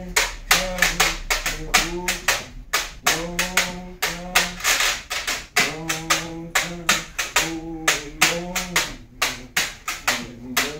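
A man singing a Gullah song unaccompanied in long held notes, over a quick, steady hand-clap beat.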